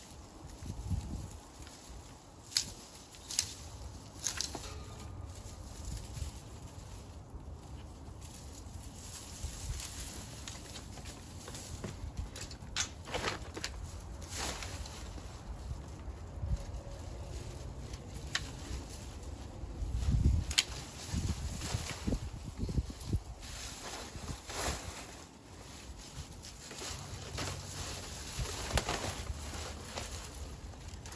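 Dry, dead plant stems and leaves being pulled and gathered by hand: irregular rustling, crackling and occasional sharp snaps and clicks, with a louder cluster about two-thirds of the way through.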